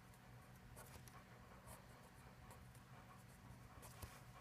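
Faint scratching of a pen on paper as arrows and letters are drawn in short strokes, over a steady low room hum.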